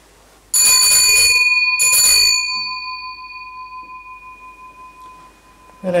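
An altar bell is rung twice at the elevation of the consecrated chalice. Each ringing is a loud, shimmering jangle, the second shorter than the first, and it leaves a clear ringing tone that dies away over about three seconds.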